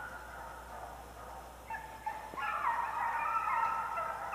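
Several overlapping animal calls: long pitched notes that step up and down in pitch, thin at first and fuller from about two seconds in.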